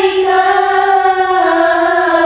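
A group of schoolgirls singing sholawat, an Islamic devotional song in praise of the Prophet, together in unison with no instruments, one of them into a microphone. They hold one long melismatic note that steps down in pitch about one and a half seconds in.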